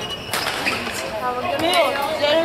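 People's voices talking, with a single sharp knock about a third of a second in.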